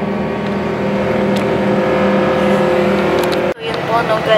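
Steady drone of a coach bus on the move, heard inside the cabin. It cuts off abruptly about three and a half seconds in.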